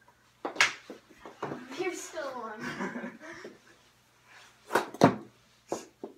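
Sharp clacks of mini knee-hockey sticks striking the ball in play: a loud one about half a second in, two close together around five seconds, and another just before the end. A voice rises and falls in between.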